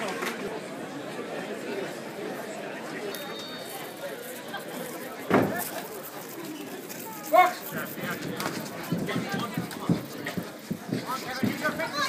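Indistinct crowd chatter and voices around a boxing ring during the break between rounds, with a single thump about five seconds in and a short call about seven seconds in.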